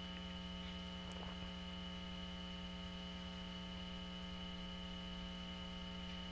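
Steady electrical hum, with a faint high whine above it, holding unchanged throughout.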